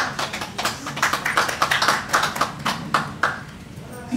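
Small audience applauding at the end of a song, the clapping dying away near the end.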